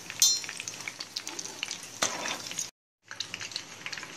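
Hot oil sizzling and crackling in a frying pan as fried semolina cutlets are lifted out with a metal strainer, with a short metallic clink just after the start. The sound drops out completely for a moment shortly before the end.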